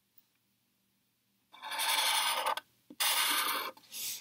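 Sharpie felt-tip marker drawn across paper: two strokes, the first about a second and a half in and the second near the end, each under a second long.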